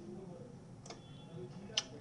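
Two faint computer clicks about a second apart, the second, near the end, the louder, over low room noise.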